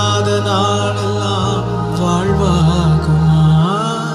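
A man singing a slow Tamil Christian worship song into a microphone, his voice gliding and bending between held notes, over sustained low accompaniment chords that change twice.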